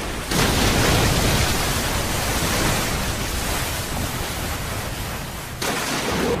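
A loud, steady rushing hiss with no tune or voice in it, like heavy rain or rushing water. It starts abruptly just after the beginning and cuts off shortly before the end.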